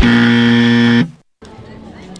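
A game-show style buzzer sound effect: one loud, low, harsh tone held for about a second that cuts off abruptly.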